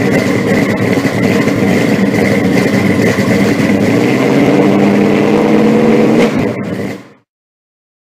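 A car engine running loudly, its pitch rising in a rev between about four and six seconds in, then cut off and fading out to silence about a second later.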